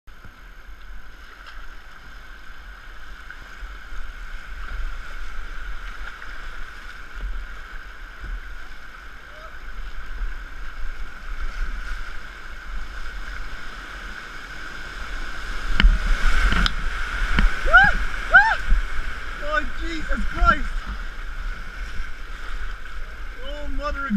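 Fast floodwater rapids rushing and churning around a kayak, heard close up with a low rumble of wind on the microphone. A sharp splash or knock comes about two-thirds of the way in, followed by a run of short whoops and yells.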